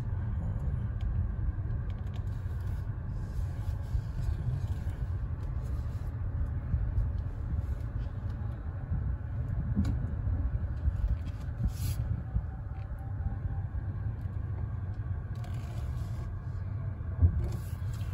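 Low steady rumble inside the cabin of a 2023 VW ID.4 electric car creeping slowly into a parking space, with a few faint clicks.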